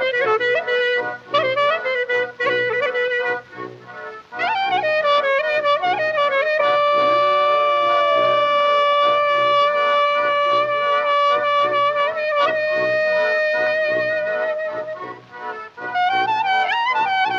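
Bulgarian kyuchek folk dance music: a wind instrument plays an ornamented melody over a steady low beat. The melody breaks off briefly about four seconds in, then holds a long note with vibrato for several seconds, and another from about twelve seconds.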